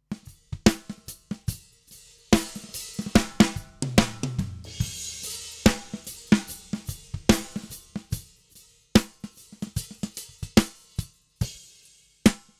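Multitrack acoustic drum recording playing back: kick and snare hits with hi-hat and cymbals leaking in from other microphones, including a cymbal wash about five seconds in. The snare runs through Cubase's EnvelopeShaper with its release turned up, which makes the snare's decaying tail longer and more audible.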